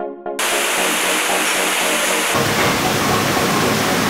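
A synth music beat cuts off just after the start and gives way to a steady, loud rushing noise of water pouring down inside a tunnel, which gets deeper about halfway through.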